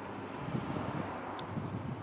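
Steady low outdoor rumble: wind on the phone's microphone mixed with distant traffic.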